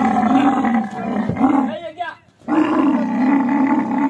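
Dromedary camel bellowing in two long, drawn-out calls, protesting as it is pushed up into a truck, with a short shout between the calls.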